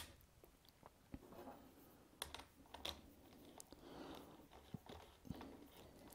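Near silence broken by a few faint, scattered clicks and light knocks of a hand tool and small cordless chainsaw being handled on a workbench, with a sharper click right at the start.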